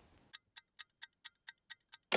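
A ticking sound effect like a clock: light, sharp ticks at an even pace of about four a second, starting about a third of a second in.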